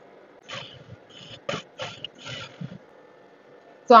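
Work at a sewing machine: a handful of short, irregular rustles and mechanical clicks as the fabric is fed through, the machine stitches briefly, and the work is pulled free at the end of a seam.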